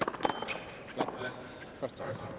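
An indistinct voice with several sharp knocks from the tennis court, the loudest near the start and about a second in.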